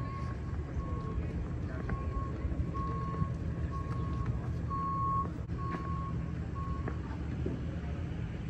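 Vehicle backup alarm beeping at one steady pitch, about three beeps every two seconds, stopping about seven seconds in, over a steady low rumble.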